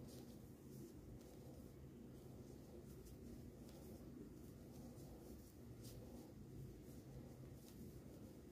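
Near silence: a faint steady low hum, with soft scattered scratches of a crochet hook drawing thick t-shirt yarn through stitches.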